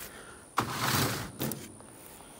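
A plastic nursery pot holding a fig plant is set down and slid across the cart's top: a scraping rustle of just under a second, then a short knock.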